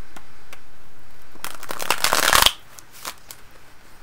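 A tarot deck being shuffled by hand: a quick run of rapid card flicks lasting about a second, followed by a few single card snaps.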